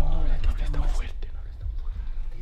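Hushed voices whispering, over a low rumble that is loudest in the first second and fades.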